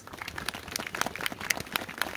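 Scattered applause from a small crowd: a sparse, irregular patter of individual hand claps.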